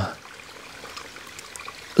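Water of a small mountain spring trickling over stones: a soft, steady trickle.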